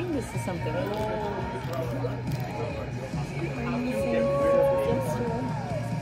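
Several people talking softly over each other in casual conversation, too overlapped for clear words.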